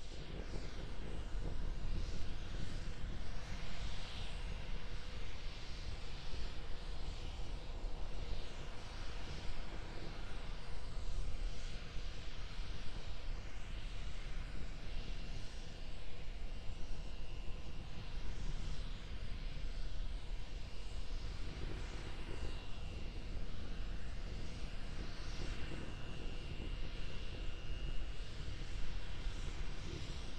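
Distant, steady low rumble of Starship SN15's single Raptor methane-oxygen rocket engine firing high overhead while the vehicle holds its hover. A faint steady high tone runs along with it through the second half.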